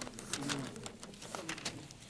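Thin Bible pages rustling and flicking as they are leafed through, with a few soft, short low hums from a man's voice.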